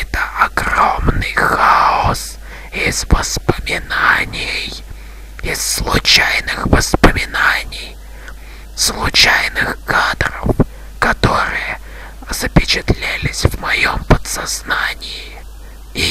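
A person whispering in hushed, breathy phrases broken by short pauses, with no clear words.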